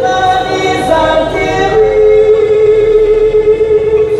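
A choir singing, with several voices together, moving between notes and then holding one long note through the second half.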